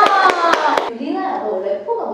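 Hands clapping quickly and evenly, about four claps a second, under a long, high held voice that slowly drops in pitch; both stop suddenly about a second in, and talking follows.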